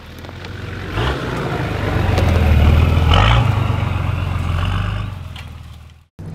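A four-wheel-drive vehicle driving along a bush track. Its engine note rises in revs about a second in and again past the middle. The sound swells to a peak halfway through and fades away.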